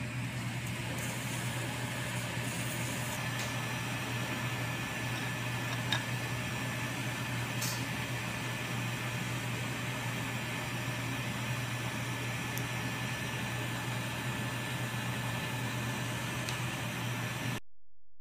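Steady hum and hiss of operating-room equipment, with a faint high steady tone and a few light instrument ticks. It cuts off suddenly near the end.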